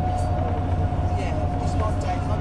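Volvo B9TL double-decker bus under way, heard inside the cabin: its six-cylinder diesel and the road give a steady low rumble, with a whine held on one pitch.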